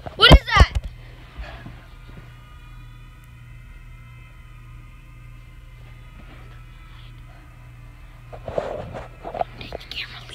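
A short, loud, wavering vocal cry in the first second, like a frightened shout. Then a steady low hum with faint steady high tones, and a few more vocal sounds about a second before the end.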